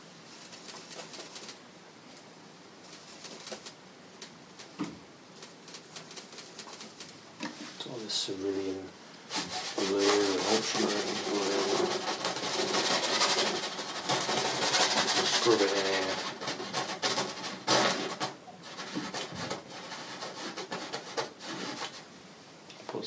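Paintbrush scrubbing blue oil paint onto a canvas, a scratchy rubbing: light and intermittent at first, then dense and loud for about eight seconds in the middle before tapering off.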